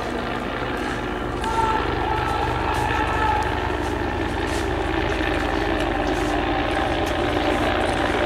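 A steady low rumble with a fast, even flutter.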